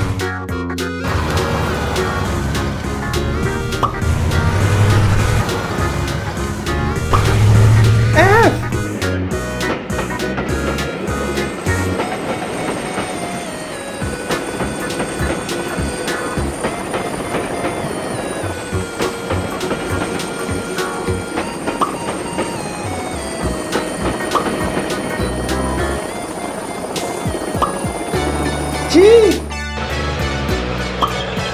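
Background music with a steady beat, with a couple of short swooping sound effects, one about eight seconds in and one near the end.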